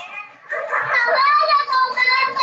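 A group of children's high-pitched voices, speaking and calling out together, with a brief lull just before half a second in; played back from a video's soundtrack.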